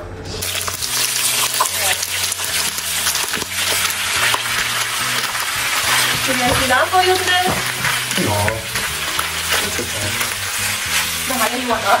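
Pieces of stewed lamb sizzling in a hot wok as they are stir-fried, a silicone spatula scraping and tossing them, with a steady hiss that starts just after the beginning. Background music with steady bass notes plays underneath.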